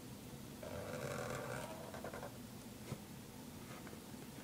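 Felt-tip marker dragged across paper, squeaking for about a second and a half, followed by a single light click a little before the end.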